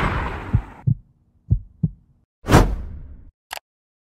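Dramatic edited sound effects: a heavy impact hit dies away, then two pairs of low heartbeat-like thumps, then a second impact hit about two and a half seconds in, and a short click near the end.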